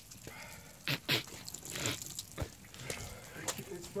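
A person retching and spitting after eating a Carolina Reaper pepper, in a few harsh bursts about a second in and again near two seconds.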